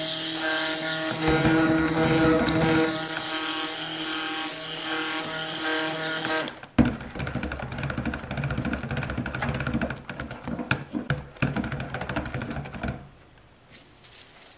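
Stick blender running in a jug of soap batter, emulsifying the oils and lye solution: a steady motor whine for about seven seconds. After an abrupt break comes a noisier, uneven stretch with clicks, which stops about a second before the end.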